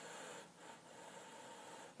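Faint sniffing through the nose at a glass of beer, drawing in its aroma.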